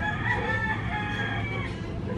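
A rooster crowing once in the background: one long call of nearly two seconds, heard over a steady low hum.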